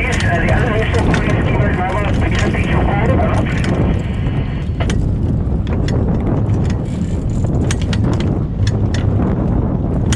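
Steady wind rushing over the microphone, with the sea and the boat making a low rumble underneath. Indistinct voices are heard for the first three seconds or so, then a few scattered sharp clicks.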